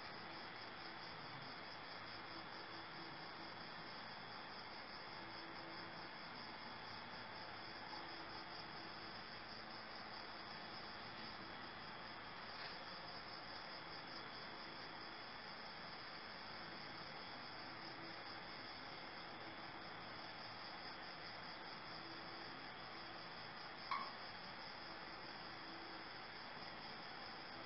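Crickets chirping steadily and faintly in a continuous high trill over a low hiss, with one short click near the end.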